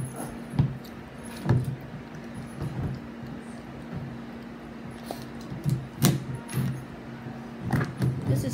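A few sharp clicks and knocks at a table, the loudest about six seconds in, over a steady low hum.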